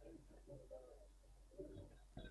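Near silence with faint, distant voices over a low steady hum.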